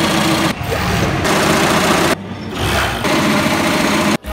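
Multi-needle embroidery machine stitching a logo into jersey fabric, its needle heads running fast and steadily. The sound drops and changes abruptly a few times.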